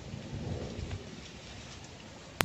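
Wind buffeting the microphone: an irregular low rumble, strongest in the first second, over a steady hiss of breeze.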